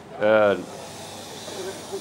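A man speaking into a handheld microphone: one short word about a quarter second in, then a pause with a faint steady hiss underneath.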